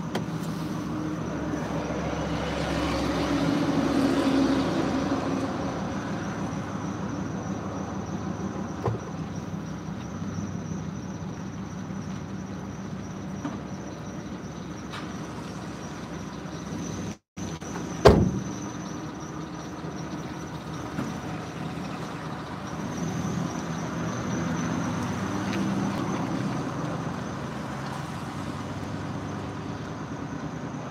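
Steady hum inside a parked car with nobody in it. About eighteen seconds in there is one loud thump, like a car door or hatch being shut, just after a brief cut-out of the sound.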